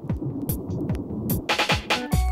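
Electronic intro effect of a reggae mix: quick falling low zaps repeating about four times a second over sharp clicks, thickening into a dense noisy burst near the end.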